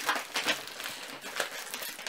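Plastic rustling and crinkling in irregular bursts as items are handled and pulled out of a shopping bag.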